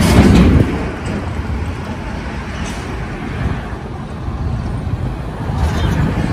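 Outdoor roadside ambience: a steady rumble of road traffic and wind, opening with a brief loud rush of noise.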